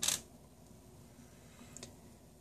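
The revolver's hand, a small metal part, set down on a tabletop: one short clink right at the start. A faint click from handling the revolver frame near the end.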